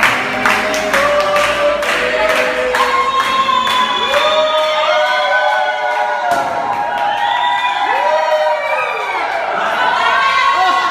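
A group of people singing a birthday song together. Steady hand-clapping, about three claps a second, runs for the first couple of seconds and then gives way to long held sung notes and cheering shouts.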